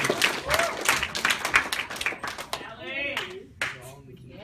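A small audience clapping, many quick hand claps that thin out and stop about two and a half seconds in, with a voice heard briefly near the end.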